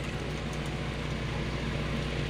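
Steady engine drone and road noise of a car driving, heard from inside the cabin.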